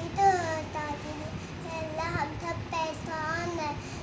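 A young girl's high voice reciting a prayer in a sing-song chant, phrase after phrase with rising and falling pitch.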